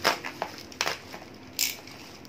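Bubble wrap and plastic wrapping crackling as it is cut and pulled open with a utility knife: a run of sharp, irregular crackles, the loudest right at the start, and a brief high hiss near the end.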